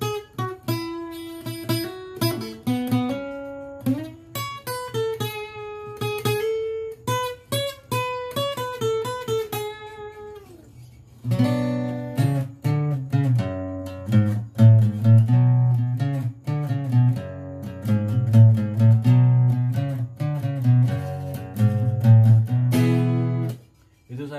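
Yamaha APX 500 II acoustic guitar with a capo, first picking a single-note melody line, then from about eleven seconds in strumming fuller, louder chords that stop abruptly just before the end.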